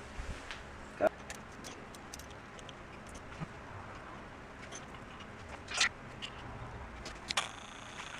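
A few isolated clicks and knocks from a socket ratchet on the handlebar clamp's allen bolts and the metal handlebar being handled, over quiet room tone; the sharpest knock comes about a second in.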